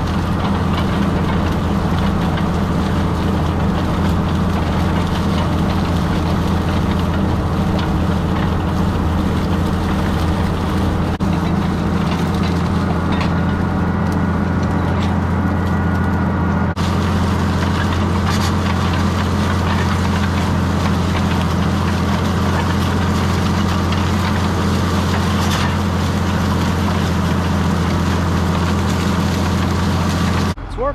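Tractor's diesel engine running steadily under load while pulling a chisel plow through the ground, an unbroken low drone with a brief glitch about 17 seconds in.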